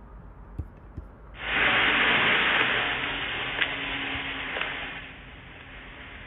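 The low-fidelity soundtrack of a phone-recorded walk-around video of a vehicle in a garage, playing on the computer: a steady, dull rushing noise that comes in about a second in, is loudest for the next couple of seconds, then eases off.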